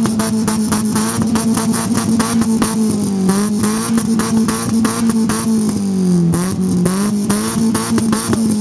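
Fiat Punto HGT four-cylinder engine held at high revs through a REMUS aftermarket exhaust, heard at the tailpipe, with a rapid, even pulsing in the note. The revs dip briefly about three seconds in and again near six seconds, then come back up.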